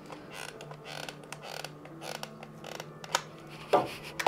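Bosch hot glue gun being squeezed, its trigger and glue-stick feed creaking and clicking as glue is pressed out onto the tablet's plastic back. One sharp click about three seconds in.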